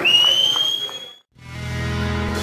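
One long whistle, a single clear tone rising slowly in pitch for about a second, then a brief gap of silence before music with bass and guitar starts about one and a half seconds in.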